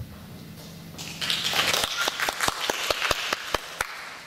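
Audience applause starting about a second in, a small crowd clapping, with single claps standing out.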